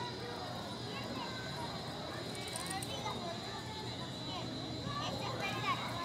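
Faint, indistinct voices in the background, too far off to make out words, over a steady faint high-pitched whine.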